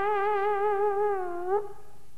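An organ pipe blown by mouth: one held note that wavers slightly, then sags in pitch and stops about one and a half seconds in.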